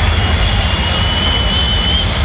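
Stadium public-address system playing a loud whooshing transition effect between player introductions: a steady rush of noise with a thin tone that slowly rises in pitch, echoing through the stadium.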